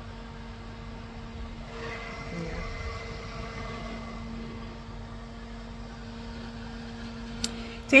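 Steady low hum with an even pitch and its overtone, like a running appliance or fan, with a faint click near the end.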